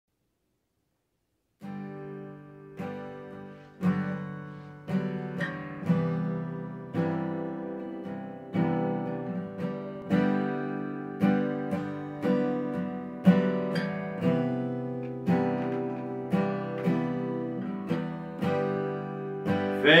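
Acoustic guitar playing a slow instrumental intro of struck chords, about one a second, starting after a second and a half of silence. A voice starts singing right at the end.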